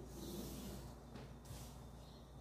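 Felt-tip marker drawn along a ruler across paper, a faint scratchy stroke lasting about a second and a half, followed by a light tap.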